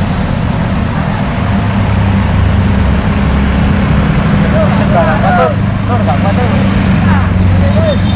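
Car and motorcycle engines labouring up a very steep road, a steady low drone, with brief shouts from people directing the traffic about five seconds in and again near the end.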